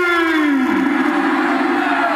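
A male qawwali singer's voice holding one long sung note that slides slowly down in pitch.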